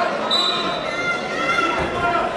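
Spectators talking in a large, echoing gym, with short squeaks and a low thump from wrestlers moving on the mat.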